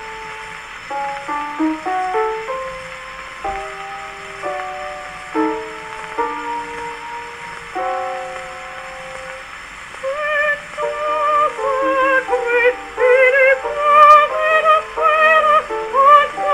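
A 1905 Fonotipia disc playing on a horn gramophone, with steady surface hiss: a short instrumental introduction in separate stepped notes, then about ten seconds in a soprano voice with wide vibrato comes in and sings louder.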